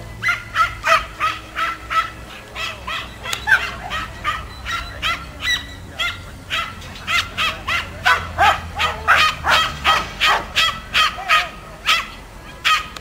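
A young mudi puppy barking over and over at the handler's herding stick: short, high-pitched yaps, about three a second and at times faster.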